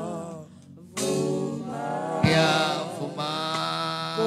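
Worship singers singing a slow gospel song in long held notes; the singing drops away briefly about half a second in and comes back at about one second.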